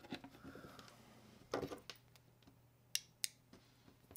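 Quiet handling of a smartwatch and its charging cable on a desk: a short rustle about one and a half seconds in, then two small sharp clicks about a third of a second apart near the end.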